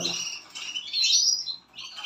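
Caged canaries chirping and twittering in high, quick phrases, in bursts near the start and around one second in, with another short burst near the end.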